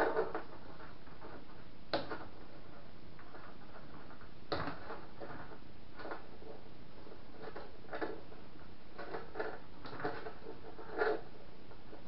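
Small irregular clicks and knocks of plastic and metal parts being handled on an Anet ET4+ 3D printer while a piece is worked loose, about one every one to two seconds, over a steady background hiss.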